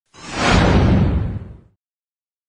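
Whoosh sound effect for an animated title-graphic transition, swelling quickly with a deep rumble underneath, then fading away about a second and a half in.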